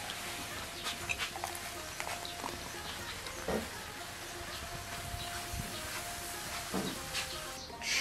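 A dark, foaming drink poured in a steady stream into glass mugs, a continuous splashing hiss, with faint background music.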